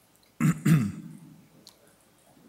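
A person clearing their throat: two short bursts in quick succession about half a second in, then fading away.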